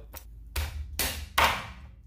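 Chinese cleaver chopping through a spiny lobster's shell onto a plastic cutting board, cracking it down the middle: a light tap, then three hard chops about half a second apart.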